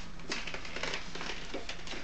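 Stiff oak tag pattern paper rustling and crinkling softly as it is handled and folded on a cutting mat, over a steady low hum.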